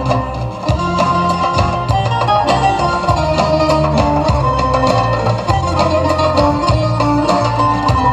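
Instrumental interlude of a Bulgarian folk song played over a PA: a melody line over a steady bass and drum beat, with no singing.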